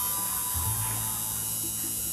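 Electric tattoo machine buzzing steadily as it works on skin.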